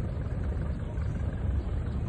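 Houseboat engine running steadily under way, a continuous low rumble.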